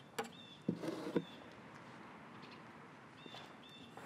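Faint outdoor background with a few short high bird chirps. A scraper blade scrapes briefly, about a second in, as it pushes softened finish and stripper off the wood.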